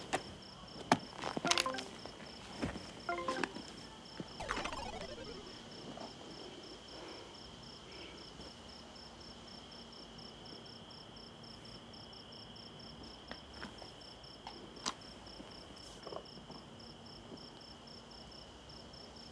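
Crickets chirping steadily, a high pulsing trill that runs on as quiet night ambience. A few soft knocks and clicks come in the first seconds, and a short falling-pitch sound about four and a half seconds in.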